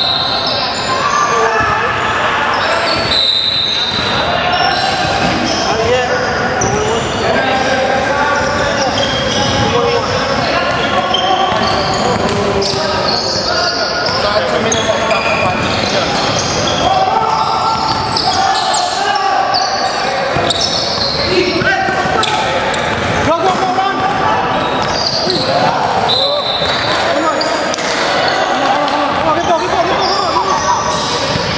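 Basketball game sounds in a large gym: a ball bouncing on the hardwood court amid a steady mix of indistinct voices from players and spectators, all echoing in the hall.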